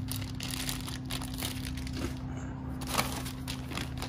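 Plastic parts bags and brown packing paper crinkling and rustling in irregular bursts as they are handled inside a cardboard box, the sharpest crackle a little before three seconds in. A steady low hum runs underneath.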